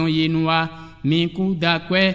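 A man's voice chanting unaccompanied, holding one steady note for well over half a second, then breaking off briefly before starting the next short phrase.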